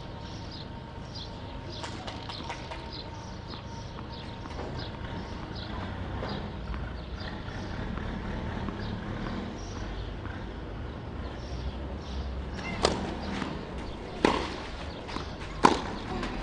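Birds chirping over steady outdoor ambience. Near the end, a tennis ball is struck by rackets three times, about a second and a half apart, as a rally gets going.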